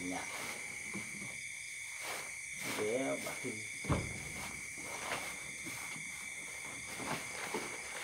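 Steady, high-pitched chorus of night insects, with a few soft knocks and rustles as bedding is handled, the strongest knock about halfway through.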